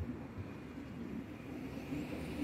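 A car driving past over brick paving, its engine and tyres making a low, steady noise.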